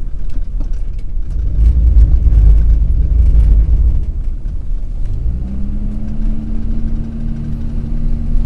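Dodge Ram 2500's diesel engine heard from inside the cab while the truck is driven slowly: a heavy low rumble, loudest about two to four seconds in, that settles into a steady hum from about five seconds in.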